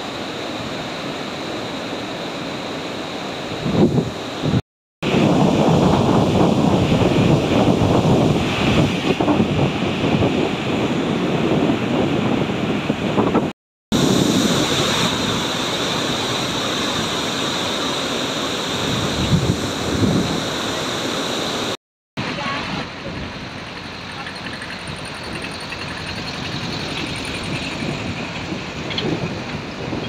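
Floodwater rushing through the open gates of the Dowleswaram Barrage on the Godavari: a steady roar of churning water, with wind buffeting the microphone, strongest in the first half. The sound cuts out briefly three times.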